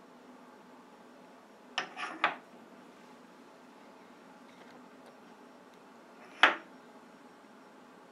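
Steel parts clinking against each other on a milling-machine vise while a stop block is set up: three quick clinks about two seconds in, then one louder single knock about six and a half seconds in, over a faint steady hum.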